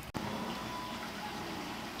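Steady low background noise, an even hiss with no clear source, broken by a brief dropout just after the start where the recording is cut.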